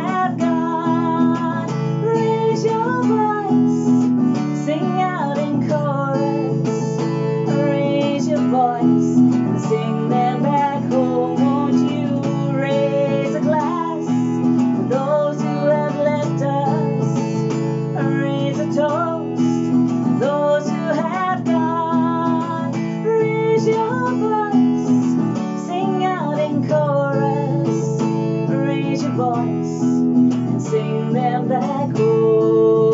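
A woman singing a song while strumming an acoustic guitar with a capo, in a steady rhythm.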